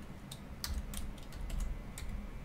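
Typing on a computer keyboard: several separate keystrokes at an uneven pace.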